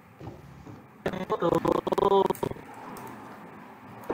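A person's voice coming through a faltering video call for about a second and a half, starting a second in. It is cut across by sharp clicks and dropouts, then fades to a faint steady hum.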